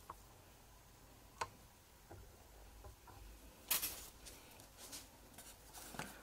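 Faint scratching and rustling in wood-shaving bedding, with a sharp click about a second and a half in and a brief louder rustle near the four-second mark.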